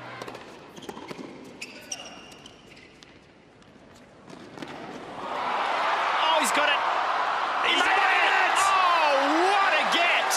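Tennis ball struck by rackets and bouncing on a hard court in a rally, a series of sharp separate pops. About five seconds in, a crowd breaks into loud cheering, shouting and applause that carries on to the end.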